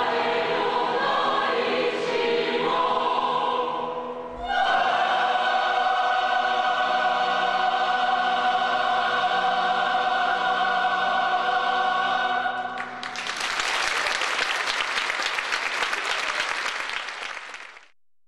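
Large mixed choir of men's and women's voices singing, moving to a new chord about four seconds in and holding it for several seconds. The singing then gives way to audience applause, which fades out at the end.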